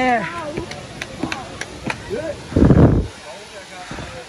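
Voices of people on a busy footpath, with a brief high voice at the start and a few faint clicks, over a steady background hiss. About two and a half seconds in, a short loud rumble stands out as the loudest sound.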